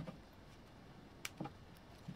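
Plastic toy-parts sprue handled in the hands, with one sharp light click a little past a second in and a smaller tick just after, over faint room tone.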